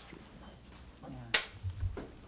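A single sharp snap of a film clapperboard, marking the start of a take, about halfway through, over a steady low hum of room tone with a few soft thuds after it.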